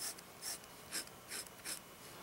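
Gold nib of a vintage Waterman Stalwart fountain pen scratching faintly across paper in about five short strokes, roughly half a second apart.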